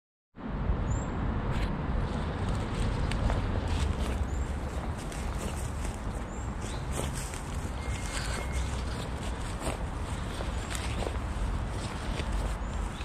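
Footsteps through grass on a riverbank, as scattered soft crunches over a low, fluctuating rumble on the microphone. A short high bird chirp repeats about every two seconds.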